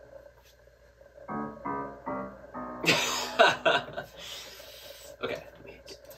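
A song in progress playing back: four short pitched notes about a second in, then the full mix with drums comes in at about three seconds and carries on.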